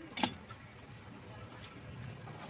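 A single short, sharp knock about a quarter second in, over a low steady background rumble.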